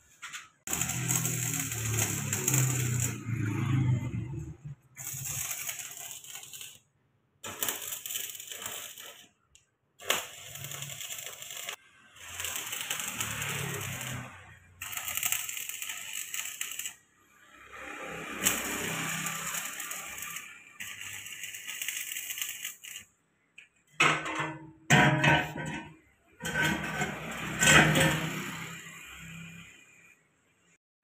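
Stick (arc) welding on a steel pipe joint: the electrode's arc crackling and sizzling in stretches of a few seconds, breaking off abruptly about eight times.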